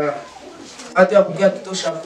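Speech only: a young man's voice speaking into a handheld microphone, starting about a second in after a brief lull.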